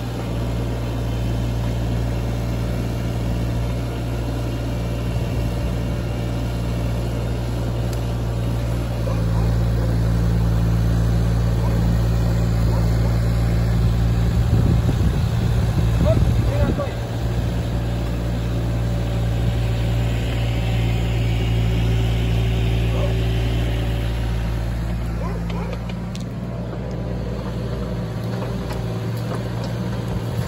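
Steady low hum of bees foraging in the blossoms of a flowering tree. It grows louder for several seconds around the middle, with a rougher swell just before it settles again.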